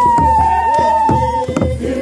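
Processional song with a large hand drum beaten about twice a second, and a single high note held for about a second and a half, sliding slightly down in pitch.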